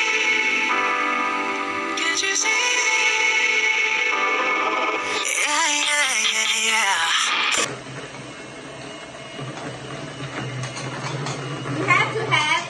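Background music for about the first seven and a half seconds, then a sudden cut to the kitchen's own sound: an electric hand mixer running steadily in cake batter, a low steady hum.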